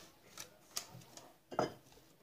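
Soft clicks and rustles of hands placing onion slices into the fish on parchment paper, a few short ones, then a louder tap about one and a half seconds in.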